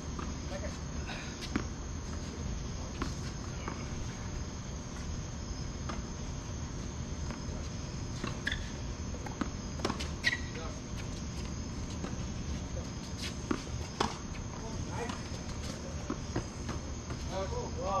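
Tennis rally on an outdoor hard court: a handful of sharp pops, spaced a few seconds apart, from rackets striking the ball and the ball bouncing, over a steady high chirring of insects.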